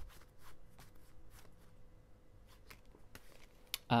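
A deck of tarot cards leafed through by hand: faint, irregular clicks and slides of card against card as they are flicked apart, with a sharper click near the end.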